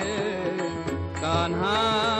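Instrumental passage of a Marathi gavlan folk song: a violin plays a melody with sliding notes over sustained harmonium accompaniment.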